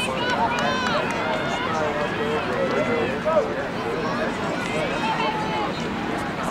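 Many voices overlapping on an open field: players and sideline spectators calling and chattering, with no one voice clear.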